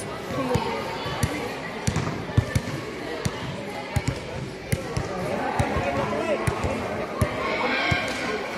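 A basketball bouncing on a hard court: sharp, irregular thuds about one or two a second, with players' voices and calls in the background.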